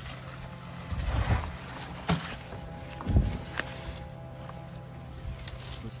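A freshly dug banana pup is handled and laid down on a plastic board, making rustling and soft knocks as soil falls from its roots. The loudest is a single thump just after three seconds in. Faint background music plays under it.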